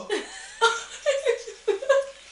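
Women laughing: a run of short laughs in quick succession from about halfway through.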